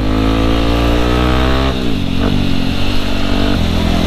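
Yamaha WR155R's single-cylinder four-stroke engine pulling under throttle, its pitch rising slowly, then falling sharply a little under two seconds in and running on steadily at a lower pitch.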